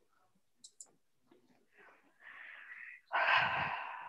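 A person breathing close to a microphone: a hissy breath, then about three seconds in a louder breath with a low rumble that fades away.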